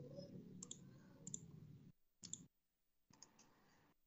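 Near silence: faint room tone with a few soft clicks, dropping to dead silence about halfway through.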